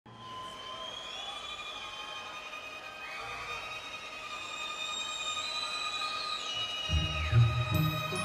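An orchestra playing held high notes, some sliding in pitch, swelling slowly louder. Low notes come in about seven seconds in.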